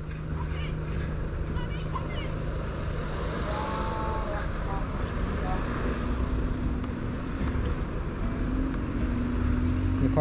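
Steady rumble of road traffic on a busy street, with the hum of vehicle engines, one hum giving way to another about halfway through.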